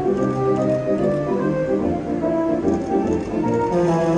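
Slot machine's free-games bonus music: a steady melodic tune of short and held notes over a bass line, playing while the reels spin.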